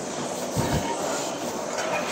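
Steady gym background noise, with one low thump a little over half a second in: a man's feet coming down on the turf under a pull-up bar between muscle-up attempts.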